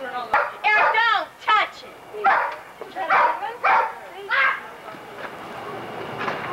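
Children shrieking and shouting excitedly in short high-pitched bursts, about seven of them, dying down after about four and a half seconds.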